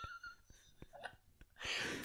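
The last breathy note of a laugh fading out, then a quiet pause with a few faint clicks, and a soft intake of breath near the end.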